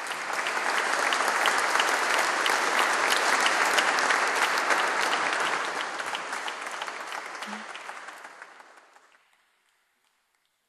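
Audience applauding, swelling within the first second or so, holding steady, then dying away to silence at about nine seconds.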